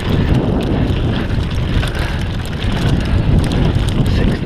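Mountain bike riding fast down a dirt trail. Wind buffets the camera's microphone and the tyres rumble over the ground, mixed with many quick rattles and knocks from the bike over rough ground. The sound is loud and continuous.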